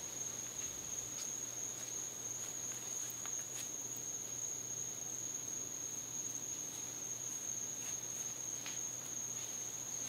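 Crickets trilling: one continuous, steady high-pitched chorus, with a few faint ticks.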